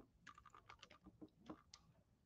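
Faint typing on a computer keyboard: about a dozen quick, irregular keystrokes.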